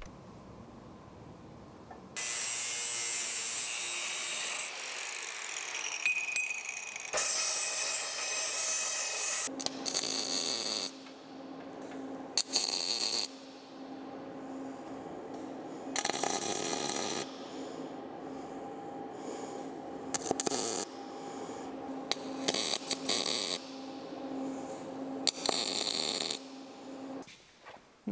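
Metal-shop fabrication noise: about two seconds in, a loud hiss from a power tool working metal for a few seconds, then a TIG welder's steady hum while tacking a steel square-tube jig, broken by short bursts of hiss.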